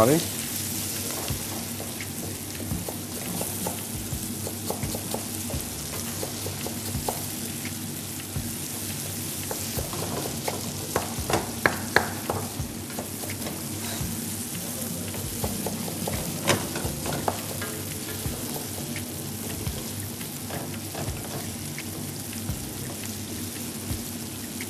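Food frying in a pan with a steady sizzle. Over it come a few quick knocks of a knife chopping parsley on a wooden cutting board, clustered around the middle and again a few seconds later.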